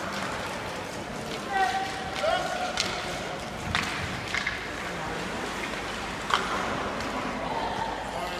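Echoing indoor ice-rink sound of sled hockey play: distant shouting voices, with a few sharp clacks of sticks and puck on the ice at about three, four and six seconds in.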